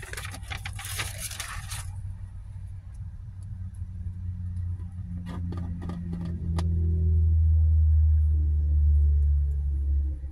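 Plastic wrapping and paper rustling and crinkling as a cardboard box is unpacked, with a few sharp crinkles about five to six seconds in. Under it a steady low rumble swells from about four seconds in and is the loudest sound in the last few seconds.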